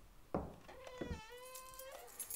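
A soft knock, then a drawn-out squeaky tone about a second long that holds a fairly steady pitch with slight bends.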